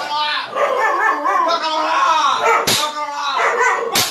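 A dog barking and yipping over a person's voice, with a sharp smack nearly three seconds in and another at the end.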